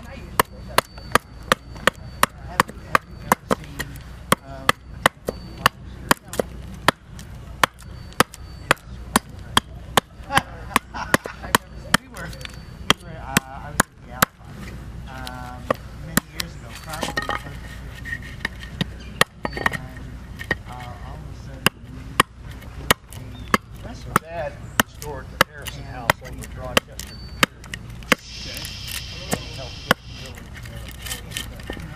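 Carving hatchet (Gränsfors Large Carving Axe) chopping a green walnut ladle blank held upright on a wooden chopping stump: short, sharp strokes at a steady pace of about two a second.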